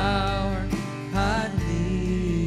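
Live worship band playing a slow song: acoustic guitar chords with bass and a woman singing a drawn-out melodic line.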